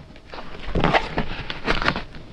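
Paper rustling and crackling twice as a picture book's paper door flap is lifted open by hand.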